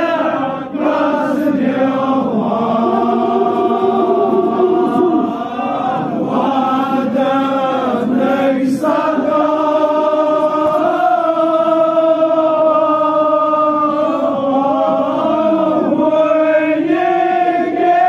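Male chanting of a Kashmiri marsiya, a Shia elegy for the martyrs of Karbala, sung through a microphone in long held notes.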